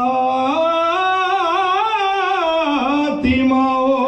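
A man singing an unaccompanied devotional poem into a microphone in long, held notes with a wavering vibrato. The line climbs in pitch and falls away near three seconds in, with a short breath before the next phrase.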